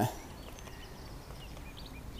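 Quiet lakeside background with a few faint, short bird chirps in the distance.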